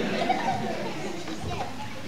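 Indistinct babble of many children's voices at once, a hubbub with no single voice standing out.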